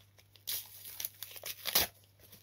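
A football trading-card pack wrapper being torn open and crinkled by hand. The rustling starts about half a second in and comes in bursts, the loudest near the end.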